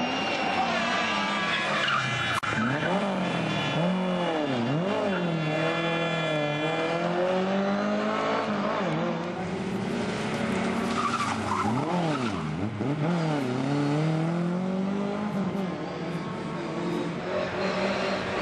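A Lada saloon rally car's four-cylinder engine revving hard on a stage, its note climbing and falling with quick dips about four and twelve seconds in, as the throttle is lifted and gears are changed for corners.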